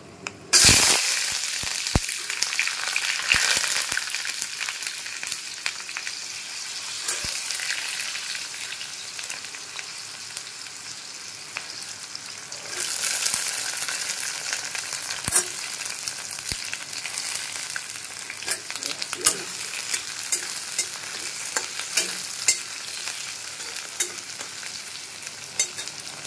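Chopped red onions hitting hot oil in an iron kadai, sizzling loudly at once and then frying steadily. A second surge of sizzling comes about thirteen seconds in as more onions go in. A steel spatula stirs and scrapes against the pan with scattered sharp clicks.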